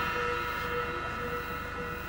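Held, slowly fading chord from a contemporary chamber ensemble: a dense cluster of steady pitches with no beat.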